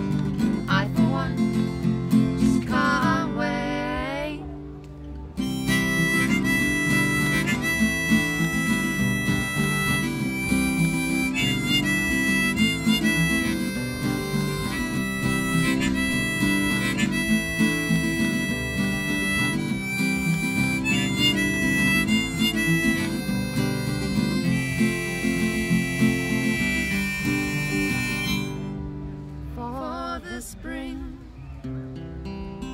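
Strummed acoustic guitar accompaniment with a harmonica solo of held, bright notes starting about five seconds in. A sung vocal line trails off in the first few seconds, and a voice comes back in near the end.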